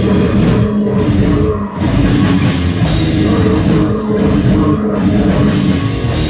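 Death metal band playing live at full volume: heavily distorted electric guitars, bass guitar and drum kit driving continuously.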